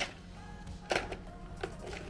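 Plastic clicks and scraping as a Polaroid 600 film pack is slid into the film compartment of a Polaroid Lab printer: a sharp click at the start, another about a second in and a smaller one near the end. Faint background music runs underneath.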